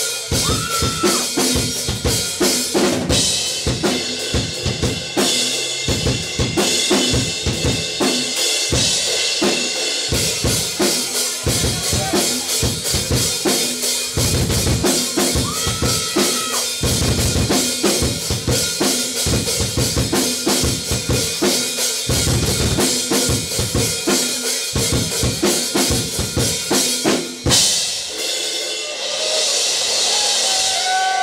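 Live drum kit solo: a dense, fast run of bass drum and snare hits under ringing cymbals. The bass drum thins out near the end.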